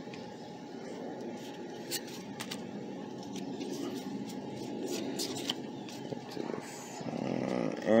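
Pokémon trading cards being handled and flipped through by hand, with a few light clicks and flicks, over a steady low outdoor rumble.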